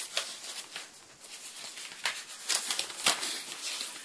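Large folded paper map being handled and lifted out, the paper rustling with scattered short crackles, more of them in the second half.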